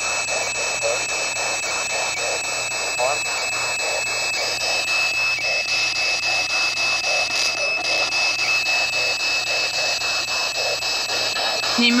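P-SB11 dual-sweep spirit box scanning radio stations: steady static chopped into rapid, even slices, with brief snatches of broadcast voices and a thin steady high tone running through it.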